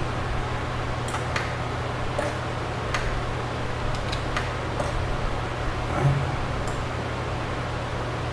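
Steady low hum and hiss of a desk recording setup, with scattered sharp clicks from a computer mouse and keyboard, about seven in the stretch.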